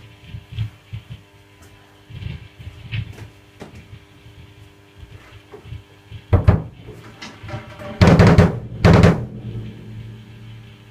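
Drum kit: a few quiet knocks and taps for about six seconds, then a loud hit about six seconds in and a pair of loud crashes with cymbal around eight to nine seconds in, as the drummer warms up. A low note rings on steadily after the last crash.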